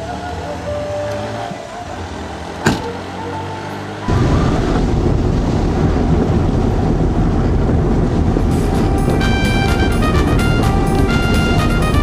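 Cabin noise of a small car on the move: loud, steady road and engine noise that begins suddenly about four seconds in. Before that there is quieter mixed sound with a single sharp knock. Rhythmic background music comes in over the car noise in the second half.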